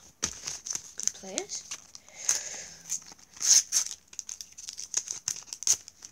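Crinkling and rustling of a sticker packet wrapper and stickers being handled: a quick irregular run of crackles, with louder crinkles about two and a half and three and a half seconds in.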